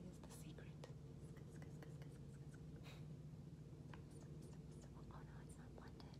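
Near silence over a steady low hum, with faint scattered clicks and soft rustles of fingertips blending makeup on a face.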